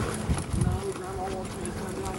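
Faint voices talking, with one drawn-out voiced sound, over soft thumps of footsteps on grass.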